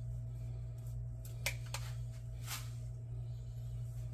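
A pastry brush dabbing egg wash onto soft risen bread dough, a few brief soft brushing sounds about a second and a half and two and a half seconds in, over a steady low hum.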